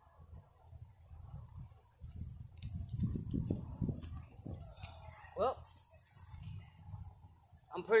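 A person blowing in repeated breaths on smouldering palm-branch tinder to bring the embers up to flame; the breath comes through as low gusts of air noise, strongest from about two to four and a half seconds in.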